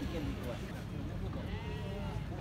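Beni Guil sheep bleating, one wavering call near the end, over a steady low rumble.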